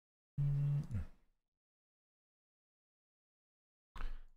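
Dead silence from a gated microphone, broken about half a second in by one short, low, closed-mouth hum from a man, held steady and then dropping in pitch.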